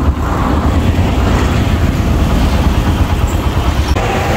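Motorcycle on the move: a steady rumble of engine and wind noise buffeting the microphone.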